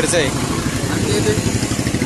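A motor vehicle engine running steadily at low revs close by, with a short voice at the very start.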